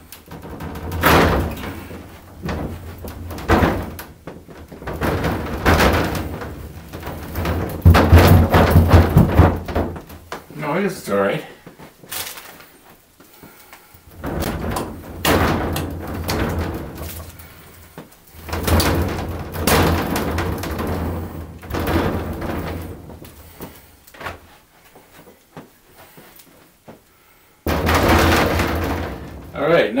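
A large plexiglass panel being slid and pushed into a wooden display case frame, in long stretches of scraping and rubbing with knocks, loudest about a third of the way in. It binds a little at one corner. The sound ends with a sudden loud scrape near the end.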